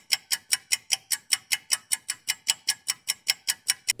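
Steady clock-like ticking, about five sharp ticks a second: a quiz countdown-timer sound effect marking the time to choose an answer.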